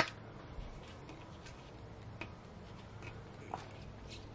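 A steam cleaner's hiss cuts off at the very start. Then come faint, sparse ticks and light scrapes of a hand scraper working softened vinyl decal off RV siding.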